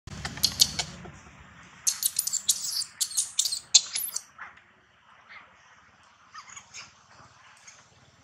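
Newborn long-tailed macaque screaming in rapid, shrill squeals, in two loud bouts over the first four seconds, then only faint calls.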